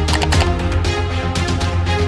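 Upbeat news-intro theme music: a steady beat over a deep, sustained bass.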